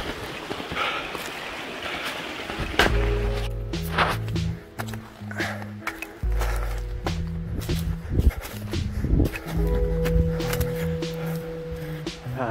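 Footsteps crunching in snow on a forest trail. About three seconds in, background music with sustained low notes starts and plays over the steps.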